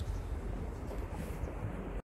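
Wind on the microphone: a steady low rumble with a faint hiss over it.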